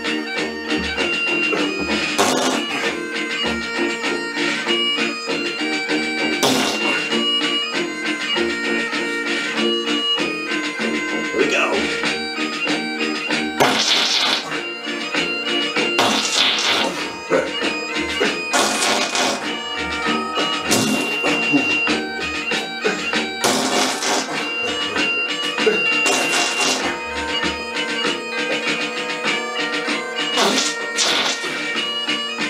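Bagpipe music: a melody played over steady drones, with short loud bursts every few seconds.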